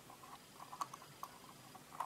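Faint, scattered small clicks and scratches of fingers handling a small plastic handheld component tester.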